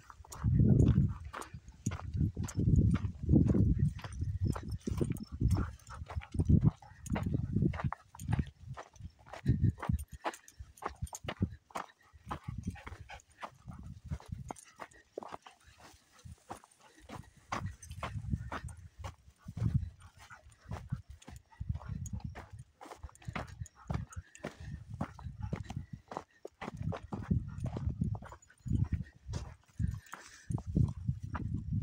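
Footsteps crunching on a dirt track, a steady tread of about two steps a second, with low rumbling gusts of wind on the microphone that come and go.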